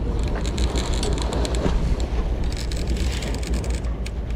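Wind buffeting the microphone over a steady low rumble on a boat at sea, with a rapid run of small clicks through the last second and a half.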